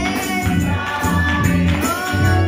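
Gospel music: voices singing a melody over a deep bass line and light, steady percussion.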